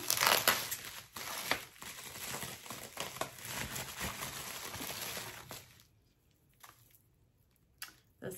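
Clear plastic bag crinkling and rustling in the hands as a necklace is unwrapped from it, with many small crackles; it stops about six seconds in, leaving near quiet with a faint click or two.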